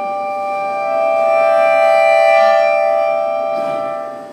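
Piano accordion holding one sustained chord that swells in loudness past the middle and then fades away near the end.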